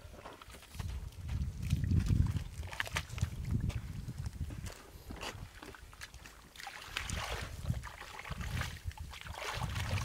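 A hoe digging into wet mud in shallow water, heavy mud and water sounds in uneven surges. From about six and a half seconds in, hands working in the mud and water make lighter, scratchier splashing.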